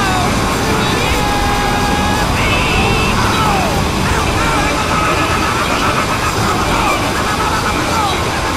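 A loud, dense jumble of many audio tracks playing over one another: steady, wide noise with scattered held and gliding tones on top, and no single clear source.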